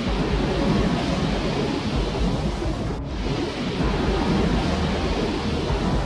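A steady deep rumbling roar of noise, with a brief break about three seconds in.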